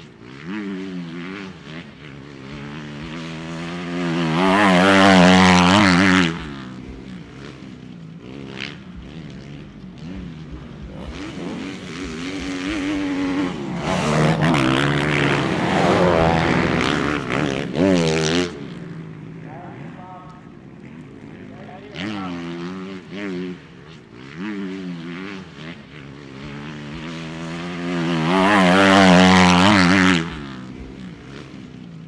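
Motocross motorcycle engines revving up and down as bikes race around the track, rising to loud close passes about four seconds in, in the middle, and near the end.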